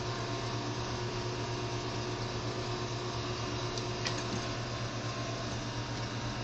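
Steady low hum and hiss of a room's background noise, with one faint click about four seconds in.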